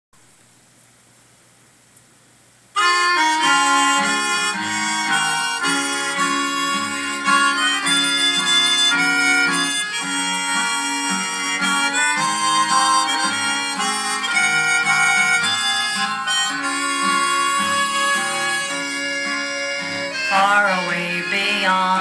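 Faint hiss with one click, then about three seconds in the instrumental introduction of a recorded old-time country song starts and plays on steadily. A lead melody instrument carries the tune.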